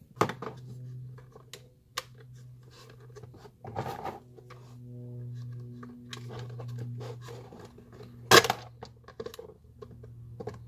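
Hands and needle-nose pliers working at the plastic housing and tubing of a coffee maker being taken apart: scattered clicks and scrapes, with a sharp snap about eight seconds in. A steady low hum runs underneath.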